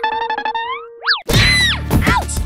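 Cartoon sound effects: a quick rising run of plucked notes over a held tone, then a springy boing. About a second and a quarter in comes a loud, noisy hit with falling tones, a comic fall.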